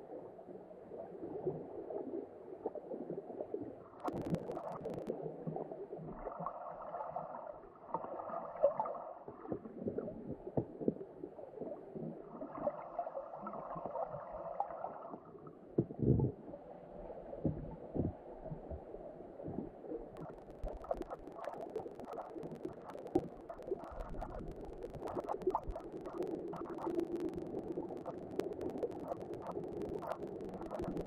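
Muffled underwater noise picked up by a GoPro in its waterproof housing, with scattered small clicks and knocks. There are two louder stretches of rumbling noise, about six and about twelve seconds in, and a sharper knock about sixteen seconds in.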